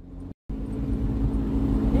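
Steady engine drone and road noise of vehicles on a highway, heard from inside a car closely following two racing diablo rojo buses (converted school buses with tall exhaust stacks). The sound cuts in abruptly about half a second in, after a short blip and a moment of silence, and grows slightly louder.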